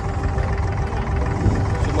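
Abra water taxi under way, its diesel engine running as a steady low rumble, with wind buffeting the microphone.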